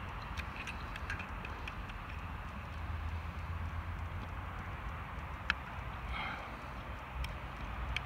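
Faint small metallic clicks of needle-nose pliers and a spring being worked onto a VW T4 door handle's lock mechanism, with one sharper click past the middle, over a steady low background hum.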